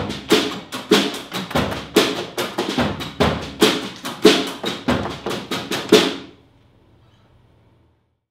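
Live acoustic band's closing rhythm on drums and strummed acoustic guitars, with even, accented strokes several times a second. It stops sharply about six seconds in and rings out briefly into faint room noise.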